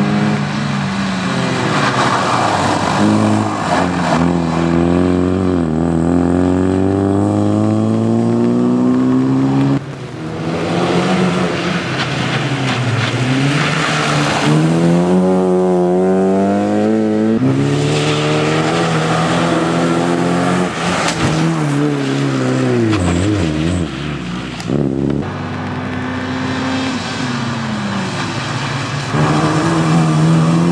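Opel Corsa B race car's engine revving hard as it drives a tight course, the note climbing in long sweeps and falling away each time the driver shifts or lifts for a corner. Tyre hiss on wet tarmac rises under the engine in places.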